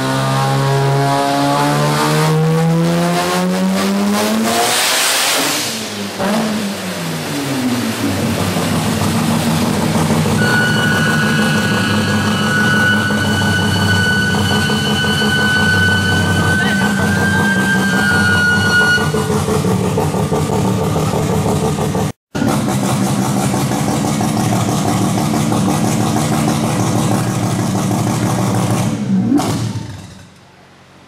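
Turbocharged Mazda RX-7 drag-car engine running loud on a chassis dyno. The revs climb over the first five seconds and fall away around six seconds, then hold high and steady for about twenty seconds with a high whine through part of it. The engine cuts off abruptly near the end.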